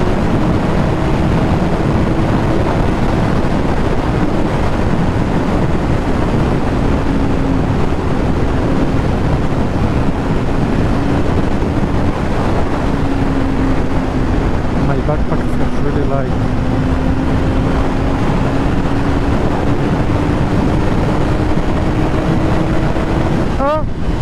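Yamaha YZF-R6 inline-four engine running steadily at freeway cruising speed, with heavy wind rush over the microphone. The engine note sags slightly midway and rises again near the end.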